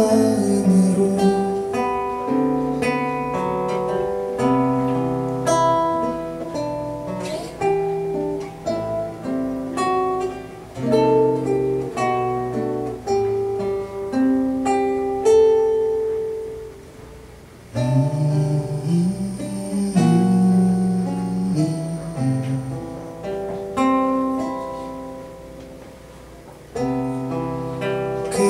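Nylon-string classical guitar played solo in an instrumental passage, single plucked notes and chords. Twice, about two thirds of the way through and again near the end, the notes are left to ring and fade before the playing picks up again.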